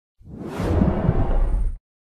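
Whoosh sound effect for an animated logo reveal: a noisy swell with a heavy low rumble that fades in quickly and cuts off sharply near the end.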